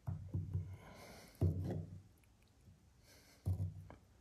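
A flat scraper knocking and rubbing against a mini block maker's mould as loose soil is worked into its corners: a few soft, dull knocks and scrapes, about a second in, near the middle and near the end.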